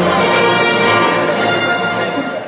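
Recorded orchestral theme music with brass and strings, played back over the hall's sound system.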